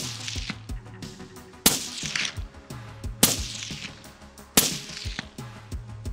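Four rifle shots from a Q Fix bolt-action rifle, the first right at the start and then about one every second and a half, each sharp crack trailing off in a short echo. Music plays underneath.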